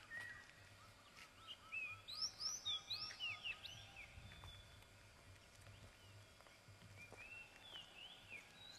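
Birds calling: a run of about ten short repeated notes together with several quick rising and falling whistles in the first half, and a few more chirps near the end, over faint outdoor background noise.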